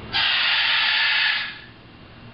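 A macaw giving a loud, harsh, raspy hiss that lasts a little over a second and then cuts off.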